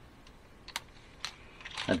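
Paper inserts and sticker sheets being handled on a skateboard deck: two light taps, then rustling near the end, where a man's voice begins.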